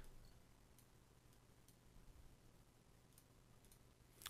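Near silence: quiet room tone with a low steady hum and a few faint computer mouse clicks, about a second in and again after three seconds.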